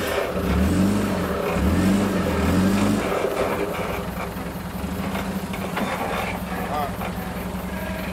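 Land Rover Discovery 1's 300Tdi four-cylinder turbo-diesel revved in about three surges as it tries to climb a rock step without a working front locker, then settling to a steady idle about three seconds in.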